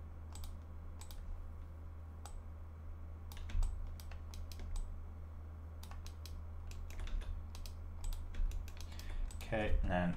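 Computer keyboard keys clicking irregularly, a few isolated presses at first and quicker runs of clicks in the last few seconds.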